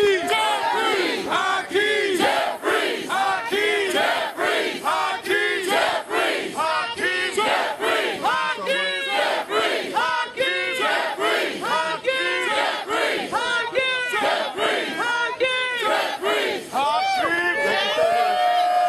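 Crowd of supporters chanting in unison, a short shout repeated over and over in a steady rhythm.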